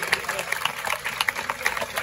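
Street crowd chatter and voices, with many scattered sharp clicks and knocks that come at no steady rhythm.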